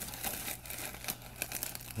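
Crinkling and rustling of a wrapper or packaging being handled, a rapid irregular string of small crackles, typical of unwrapping a chocolate truffle.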